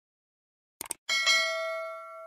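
Two quick clicks, then a bright bell chime about a second in that rings on and slowly fades. It is the notification-bell sound effect of a subscribe-button animation.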